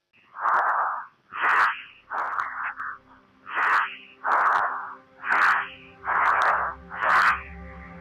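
Heavy, fast breathing inside a pressure-suit helmet, picked up by the helmet microphone: about one loud breath a second, eight in all. Soft music with a low hum fades in near the end.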